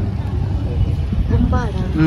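Low rumble of wind buffeting the phone's microphone, with a voice speaking briefly near the end.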